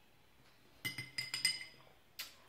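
Metal spoon and fork clinking against a plate, four or five quick strikes a little under a second in, each ringing briefly.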